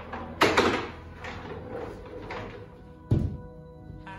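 Knocks and thuds of a wooden panel box on casters being tipped upright and set down on a tiled floor, the loudest about half a second in and a sharp knock about three seconds in, over background music.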